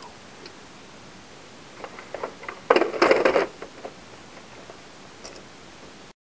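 Plastic clicks and a short clatter of the projector's lamp module being handled and pushed back into its bay, the clatter loudest about three seconds in.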